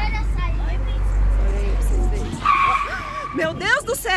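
Car tyres skidding in a short, steady squeal a little past halfway as the car brakes hard to avoid, then strike, a pupil crossing in front of it. Shouts and screams from onlookers follow straight after. Earlier there is a low wind rumble on the phone microphone.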